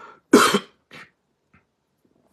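A man coughing into his hand: one strong cough a little under half a second in, then a weaker one about a second in.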